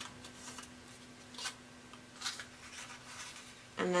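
Soft rustling of pattern paper as the pinwheel's cut points are bent in and handled, with a few brief crinkles, one at the start and two more about a second and a half and two and a quarter seconds in.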